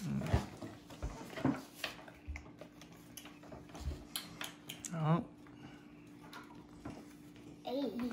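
Playing cards being handled, drawn and laid on a wooden table: scattered soft taps and clicks. There is a short vocal sound about five seconds in, and a faint steady hum runs underneath.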